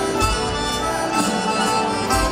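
Live band playing the slow instrumental opening of a song: a reedy accordion melody over guitar, bass and drums, with a cymbal struck at a steady pace.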